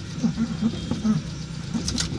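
Car engine idling in neutral, heard from inside the cabin.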